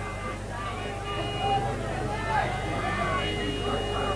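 Indistinct voices of people talking near the microphone, over a steady low hum.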